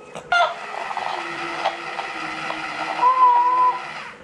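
Battery-powered plush alien toy giving out electronic sounds through its small speaker, with a higher held note about three seconds in.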